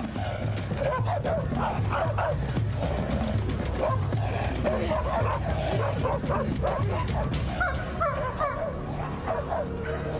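Dogs barking and yelping over and over, in short excited cries, over a steady musical score.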